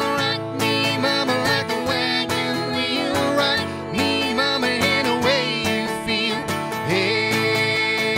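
Acoustic guitar strummed as accompaniment while a man and a woman sing a country song live.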